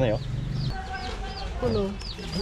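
Baby chicks peeping: a steady run of short, high, falling chirps, several a second.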